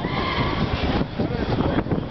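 Outdoor crowd noise with wind buffeting the microphone, and a high wavering cry in about the first second.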